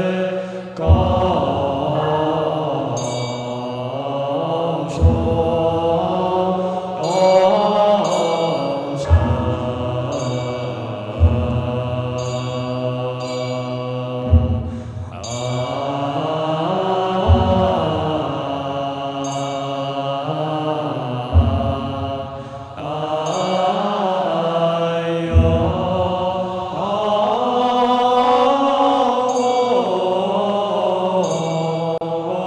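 Buddhist monks chanting in unison, a slow drawn-out hymn with long sliding notes, from the Chinese Buddhist evening service. A deep-toned percussion instrument is struck about every four seconds, keeping time with the chant.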